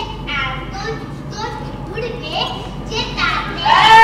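Children's voices speaking stage dialogue, ending in a loud, high-pitched cry near the end.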